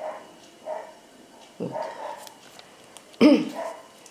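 A dog barking in three short calls, the last near the end and the loudest.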